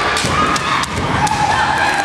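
A kendo bout on a wooden gym floor: several sharp knocks and thumps from bamboo shinai and stamping feet, over high-pitched shouting.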